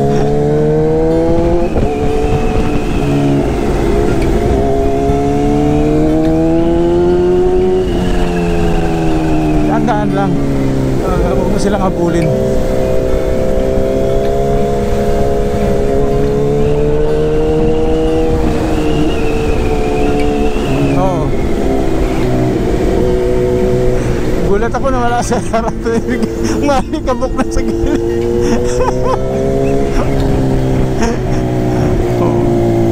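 Motorcycle engine running under way, its revs climbing slowly and then dropping back several times, most clearly about eight and about twenty-one seconds in, over a steady rush of road and wind noise.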